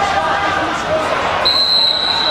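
A whistle blown in one long steady blast starting about one and a half seconds in, over voices echoing in a large indoor hall.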